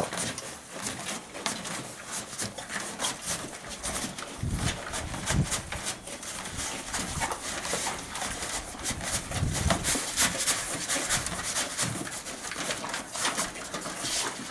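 A horse eating loose grain from a feed pan: its lips work over the pan picking up the kernels, with frequent small crisp clicks and crunching as it chews. Two low, louder sounds stand out, one about four to five seconds in and one near ten seconds.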